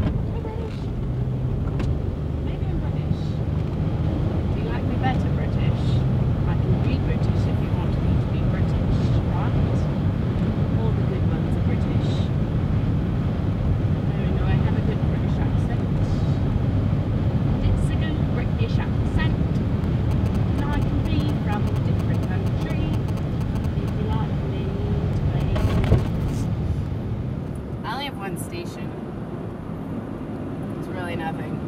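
Steady low rumble of a car on the move heard from inside the cabin: engine and road noise, easing slightly near the end.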